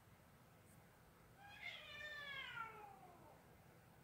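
A cat meowing once, a long drawn-out call of about two seconds that slides down in pitch, starting about a second and a half in.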